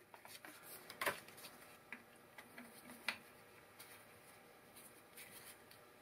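Faint clicks and rubbing from gloved hands fitting the timing belt over the tensioner of a Volvo 2.4-litre engine, with two slightly sharper clicks about one and three seconds in.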